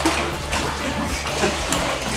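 Lake water lapping and sloshing against the boat and the rock walls of a sea cave, with a steady low hum underneath.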